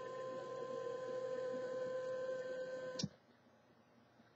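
Small 24-volt DC water pump running with a steady hum, then switching off abruptly with a click about three seconds in. The PLC has stopped it because the water level has fallen below the bottom capacitive sensor.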